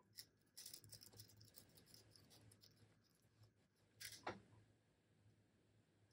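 Faint rustling of cotton fabric handled by hand as a waistband casing is folded and pinned, with one brief louder rustle about four seconds in, over a low steady hum.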